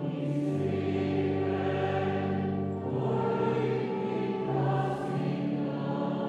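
Choir singing a slow church hymn in long, held chords, moving to a new chord every second or so.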